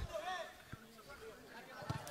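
Faint distant voices calling out across the pitch, with a short soft knock about three-quarters of a second in and another near the end.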